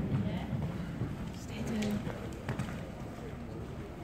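Pony's hoofbeats at a canter on a soft arena surface, with a few sharper knocks about halfway through, under murmuring voices.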